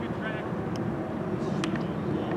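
A brief shout from a player on an outdoor soccer field over a steady low outdoor rumble, with a few short sharp knocks later on.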